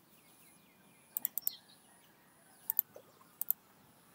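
Computer mouse clicking in short clusters over quiet room tone: three quick clicks a little over a second in, then two pairs of clicks near the three-second mark and about half a second later.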